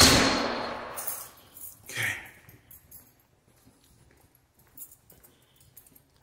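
A loud bang at the start with a long echoing decay, as in a bare hallway, then a softer thud about two seconds in; after that only faint scattered ticks.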